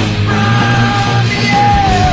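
Loud rock band recording, a dense mix of guitars and drums, with a held high note that bends downward near the end.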